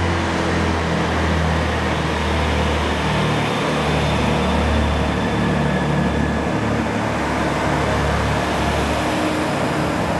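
Chiltern Railways diesel multiple unit pulling out of the platform, its underfloor diesel engines running with a deep, steady drone. The engine note shifts about three and a half seconds in, and the deepest part fades out near the end.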